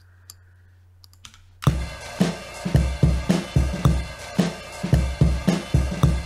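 A classic drum loop with kick, snare and hi-hat starts playing back and repeating about a second and a half in, after a short quiet stretch with a couple of faint clicks. The loop, originally about 87 BPM, is sliced and stretched to play at a 110 BPM project tempo.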